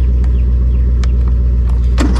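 John Deere 100 series riding mower engine running steadily just after start-up.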